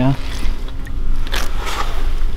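Steady low wind rumble on the microphone, with a short burst of hiss and splashing about a second and a half in as wet fishing line is pulled by hand up through the ice hole.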